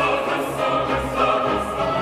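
Choral music, voices holding long sustained notes.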